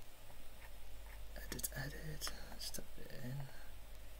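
A man's voice muttering softly under his breath, too quiet to make out, for about two seconds in the middle, over a steady low hum.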